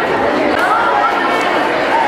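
Background chatter of many people talking at once in a large, echoing hall.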